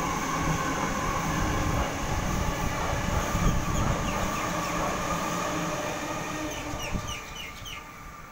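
Sydney Trains Waratah double-deck electric train running past along the platform: steady rolling rumble of the wheels on the rails with a constant electric hum, easing off near the end as the last cars clear.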